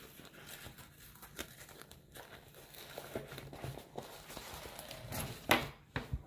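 Handling noise of dog gear being put down and picked up: faint rustling and light clicks, with one louder rustle near the end.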